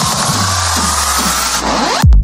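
Electronic hardcore dance music at the top of a build-up: a fast kick-drum roll stops and gives way to a rising synth tone over a noise sweep, with a low bass drone coming in about a third of a second in. The high noise thins out near the end, just before the drop.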